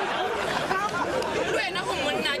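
Talking over the chatter of a crowd: several voices overlapping.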